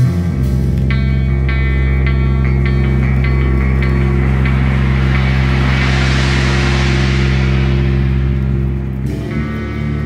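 Live band music led by electric guitar: deep sustained notes ring underneath while higher picked notes sound in the first few seconds. A hissing swell builds through the middle and fades, and the chord changes near the end.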